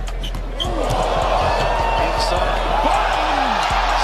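Live game sound in a basketball gym: the ball bouncing and sneakers squeaking on the hardwood court over a steady noise of crowd and voices, with a faint music bed underneath.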